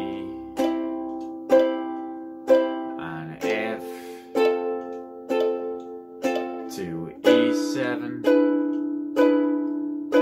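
Ukulele strummed slowly and evenly through a chord progression, about one strong strum a second with lighter strums between, shifting to a new chord about seven seconds in.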